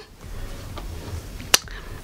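A single sharp click about one and a half seconds in, over low room noise.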